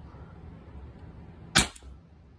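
Umarex HDR68 .68-calibre less-lethal marker, converted to run on a high-pressure air bottle at about 800–850 psi, firing a single shot about one and a half seconds in: one sharp crack, with a fainter click just after it.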